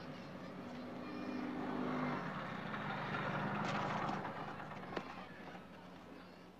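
A small moped engine approaching, growing louder to a peak about two-thirds of the way through, then dying down as the moped pulls up, with a sharp click near the end.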